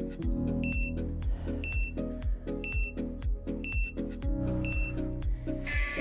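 Background music with a steady beat. Over it, five short high beeps sound a second apart: a countdown marking the end of the exercise interval.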